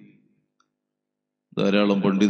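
A man's voice in long, steady-pitched chanted phrases fades out. After just over a second of near silence, the chanting starts again loudly.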